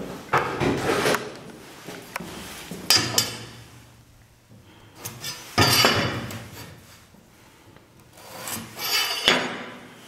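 A steel carpenter's square and an MDF board being handled and slid against each other, heard as about four short bouts of rubbing a few seconds apart.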